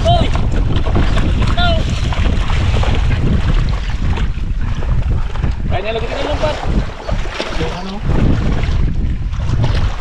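Wind buffeting the microphone with a steady low rumble, with brief bits of talk about two seconds in and again near the middle.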